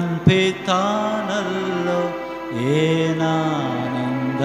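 A man singing a Kannada worship song solo into a microphone, holding long notes that slide up and down between phrases. A brief pop cuts in about a third of a second in.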